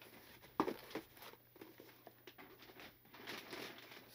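Plastic bag rustling and crinkling faintly as a boxed item is pulled out of it, with a short knock about half a second in.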